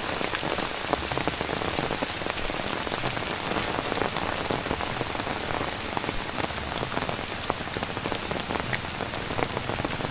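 Steady rain falling, with many separate drops hitting close by as quick ticks over the even hiss of the downpour.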